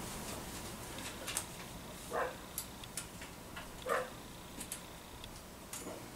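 Faint scattered ticks and small clicks of a screwdriver working the two screws that hold the breaker points on a Kohler KT17 engine. Two short squeaks come about two and four seconds in.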